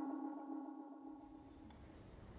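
A sustained ringing musical tone with many overtones dies away, trailing off to faint hiss about two-thirds of the way through.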